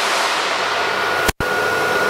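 Vacuum pump of a CNC router's vacuum hold-down table running: a steady rush of air noise with a faint high whine, cutting out for an instant about two-thirds of the way through.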